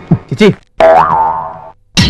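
A film soundtrack sound effect: two quick falling pitch swoops, then a held tone with a small bend near the start that fades away.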